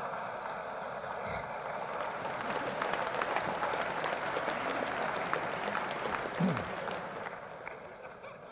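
Large hall audience laughing and applauding, the clapping building about two seconds in and fading near the end. A short, low, falling sound stands out briefly about six and a half seconds in.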